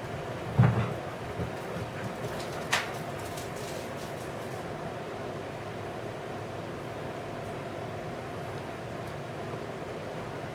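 Steady background hum with a dull thump about half a second in and a sharp click a little before three seconds.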